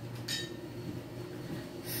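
A single short, light clink of a small hard object, quiet, over a steady low hum.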